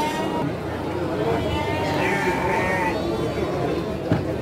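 Garut sheep bleating once, a wavering call about two seconds in that lasts about a second, over market chatter.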